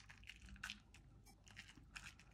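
Near silence, broken by a few faint soft ticks and scrapes of a spoon scooping grated parmesan and sprinkling it over a dish.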